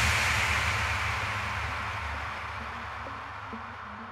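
Electronic dance track at a breakdown: with the beat cut out, a wash of noise over a low rumble fades away steadily, and faint short notes begin near the end.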